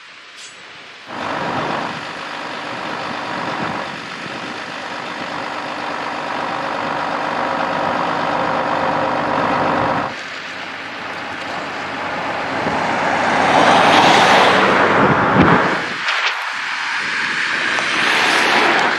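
Heavy diesel truck engines running: a steady engine drone for the first half, then a Volvo tow truck's engine growing louder as it comes closer, loudest about three-quarters of the way through.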